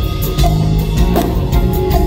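Live band music: a drum kit keeping a steady beat over sustained low bass notes.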